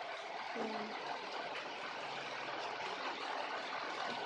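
A steady background hiss with no distinct event in it.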